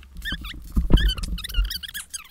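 Sped-up, squeaky, high-pitched chatter, a child's voice in fast-forwarded footage. Low thumps come about a second in and again near the end.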